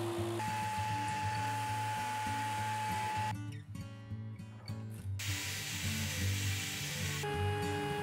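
Background music over a belt sander running for about the first three seconds. A quieter stretch follows, then power-tool noise starts again about five seconds in.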